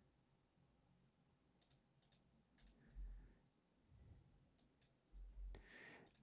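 Near silence with a few faint clicks from working a computer's keyboard and mouse, and a couple of soft low bumps about halfway through and near the end.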